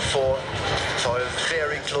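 A commentator's voice speaking over the steady engine noise of a formation of Aero L-39 Albatros jet trainers flying past.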